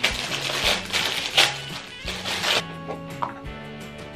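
Plastic wrapping crinkling as plastic specimen cups are unwrapped by hand, over background music; the crinkling stops about two and a half seconds in, leaving the music.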